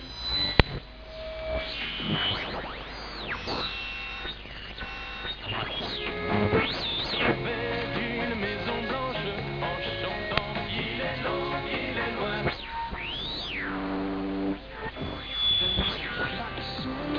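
Medium-wave broadcasts received on a two-transistor audion (regenerative receiver): snatches of music from stations, crossed by whistles that glide up and down in pitch as the tuning passes between station carriers. The whistles come from interference between carriers and the receiver's regeneration set near oscillation.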